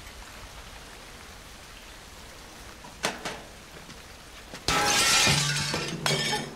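Steady rain falling in a film soundtrack, with a short sharp knock about three seconds in. Near the end a sudden loud crash of noise takes over, with a low hum under it.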